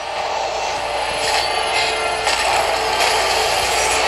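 Film teaser soundtrack: a steady, rough sound-design texture with faint music, and short brighter swells about a second and two seconds in.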